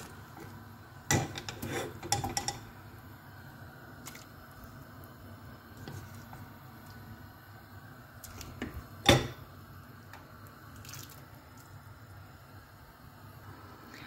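A wooden spoon scraping and knocking against a nonstick saucepan as sautéed onion and carrot are stirred and scooped into a pot of broth. A few quick knocks come about a second in, and there is one loud, sharp knock about two-thirds of the way through.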